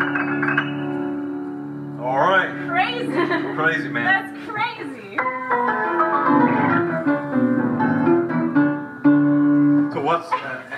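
1939 Story & Clark Storytone electric piano played through its amplifier: chords that ring on long and steady after they are struck, with an organ-like sustain. A person's voice is heard briefly over the playing in the middle.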